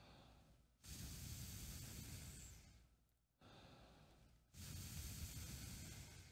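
A man blowing a focused, fast stream of air through pursed lips onto his palm, twice, each blow about two seconds long and preceded by a faint breath in: the focused, cooler air stream used for playing a brass instrument.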